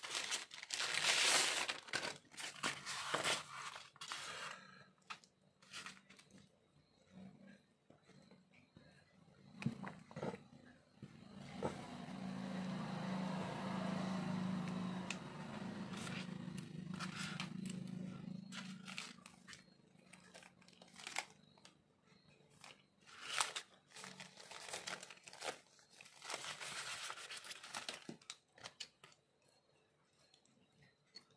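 Plastic mailer bag crinkling and tearing as a parcel is opened, followed by light clicks and rustles of small plastic parts and styrofoam packaging being handled. A steady low hum swells and fades in the middle, and another stretch of crinkling comes near the end.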